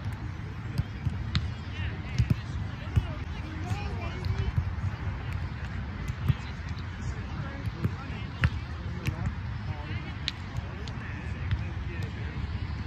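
Outdoor rumble on the microphone with scattered short knocks and faint voices of people nearby.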